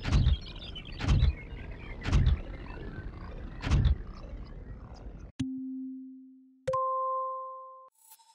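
Four heavy thumps about a second apart over a steady noise, then two electronic tones: a low one, then a higher one with its octave above. Each tone starts sharply and fades over about a second.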